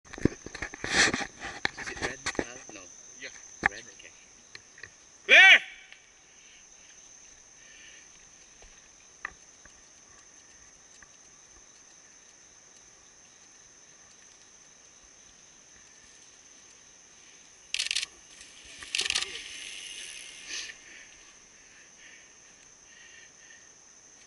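A steady high drone of insects in the woods runs throughout. About eighteen to twenty seconds in come two short bursts of rushing, crunching noise as a mountain bike's tyres hit the dirt trail and land a jump.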